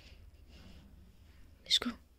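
A person whispering softly, then a short, sharp click-like sound near the end.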